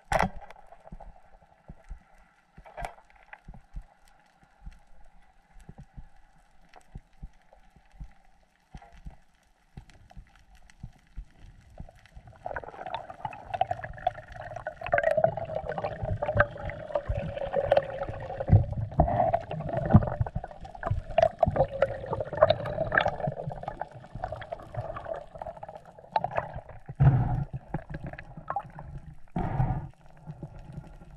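Underwater sound picked up by a diver's camera: scattered clicks and snaps over a faint steady tone. About twelve seconds in it turns louder, with water rushing and gurgling and many knocks and thumps as the diver moves through the water.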